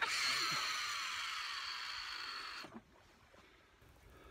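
Baitcasting reel's spool whirring as line pays out on a cast. It starts suddenly, falls slightly in pitch as the spool slows, and cuts off abruptly after nearly three seconds.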